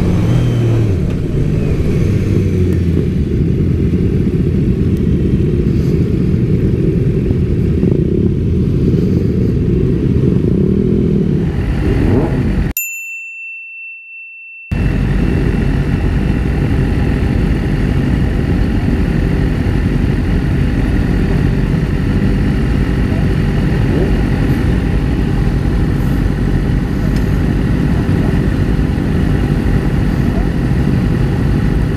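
Motorcycle running at road speed with heavy low wind rumble on the bike-mounted microphone. About halfway through the sound cuts out for a couple of seconds under a steady high beep, then comes back as a group of motorcycle engines idling steadily.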